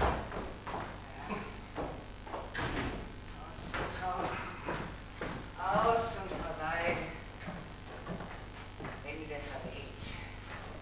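Distant speech from actors on a theatre stage, heard from the auditorium, with a wooden stage door knocking shut right at the start.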